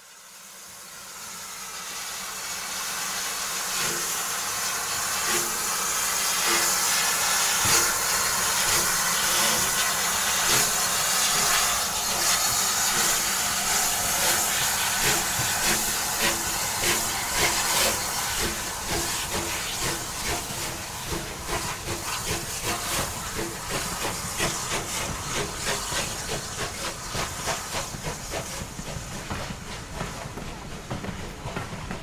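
Sound of a steam train laid over the slideshow: hissing steam with a rhythmic beat of chuffs and rail clicks. It fades in over the first few seconds, and the beat grows denser in the second half.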